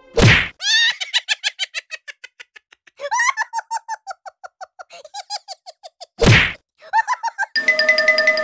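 Edited-in cartoon sound effects: a sharp whack at the start and another about six seconds in. Between them come runs of quick, evenly spaced pitched blips that fade away. A light mallet-percussion music tune begins near the end.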